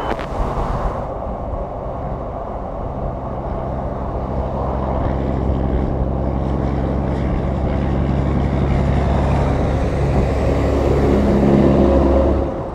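Vehicle engine and road noise at highway speed: a steady low drone with wind and tyre noise, growing gradually louder toward the end.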